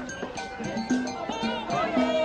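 Music with a steady beat of short repeated low notes and bright percussion, with wavering voices like singing coming in during the second half.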